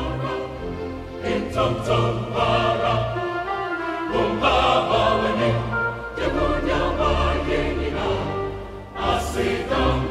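Large mixed choir of men and women singing a gospel choral anthem in full harmony, with sustained low organ notes beneath. A new, louder phrase enters just after four seconds in.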